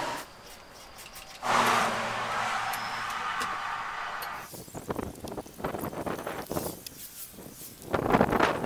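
A steady rushing noise with a faint low hum lasts about three seconds. It is followed by a run of short, irregular rubbing and knocking sounds as a tractor cab's controls and windows are wiped down with a cloth.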